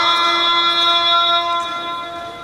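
A muezzin's call to prayer over the mosque's loudspeakers: a man's voice holds one long steady note at the end of a phrase, which fades away in the echo about a second and a half in.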